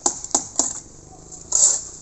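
Metal hand tools knocking and scraping on concrete and mortar: a run of sharp clicks, about three a second, then a louder scrape near the end.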